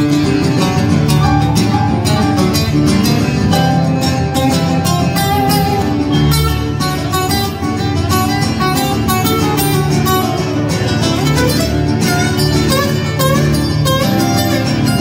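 Live acoustic guitars playing an instrumental passage, a strummed rhythm under a picked lead whose notes slide up and down in pitch around the middle.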